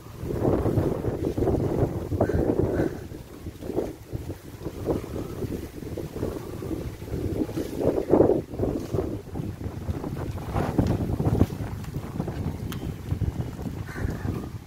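Wind buffeting a phone microphone in uneven gusts, a low rumbling noise that swells and fades, strongest about eight seconds in.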